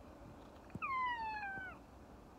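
A domestic cat meows once: a single call of about a second that falls gently in pitch and drops off at the end.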